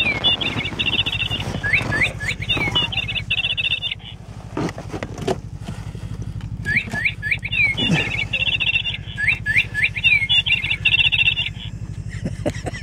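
Battery-powered toy singing bird, switched on as a trap lure, playing a recorded bird song of sweeping chirps and fast trills. The same phrase plays for about the first three and a half seconds, stops, and repeats from about seven to eleven seconds, over a steady low hum and a few light knocks.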